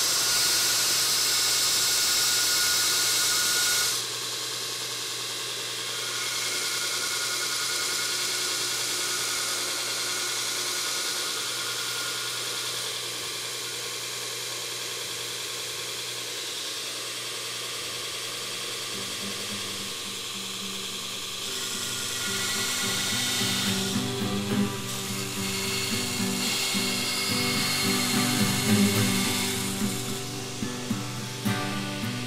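A 2x72 belt grinder grinding a bevel on the hardened steel of an old file. It gives a loud, steady hiss for the first four seconds, then runs more quietly and steadily. Background music comes in over it a little past the middle.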